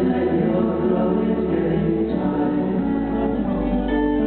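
Live folk band: acoustic guitars under several voices singing together in harmony.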